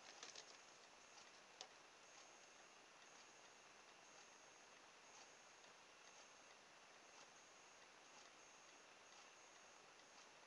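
Near silence: faint room hiss, with a few small clicks in the first two seconds as a battery wire is handled on a circuit board for soldering.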